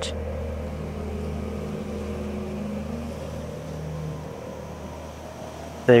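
A soft, steady low drone of background score with a few held notes that die away in the second half.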